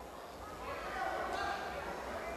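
Faint voices murmuring in a large hall, with a few dull thumps.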